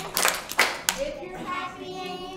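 Children clapping their hands along with a song: a few sharp claps in the first second, then children's voices come back in.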